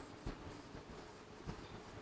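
Faint taps and scratches of a stylus writing a word on the glass screen of an interactive display, a few soft ticks as the strokes are made.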